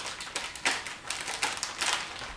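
Plastic packaging being handled: an irregular run of crinkles, taps and clicks as a blister-packed card of party-favor rings is picked up from a stack.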